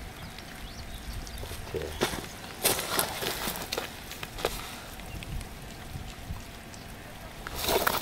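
Hands adjusting a drip-irrigation emitter on plastic tubing among dry grass and leaves: scattered clicks and rustles over faint water hiss, with a louder rustle near the end.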